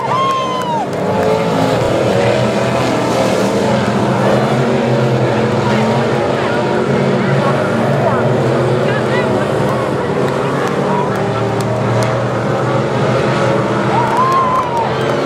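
Engines of several dirt modified race cars running steadily around a dirt oval, a continuous loud drone from the pack.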